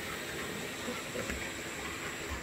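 Faint steady hiss with a few soft, low thumps and rustles as an excited golden retriever is rubbed and shifts about on a foam floor mat.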